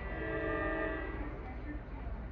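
An approaching train sounds its horn: one steady blast of several tones at once, lasting just over a second, over a low steady rumble.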